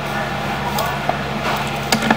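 Restaurant kitchen background noise: a steady low hum with a few sharp clicks, about three in two seconds.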